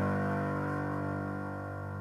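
A closing piano chord sustaining and slowly dying away, the last sound of the song.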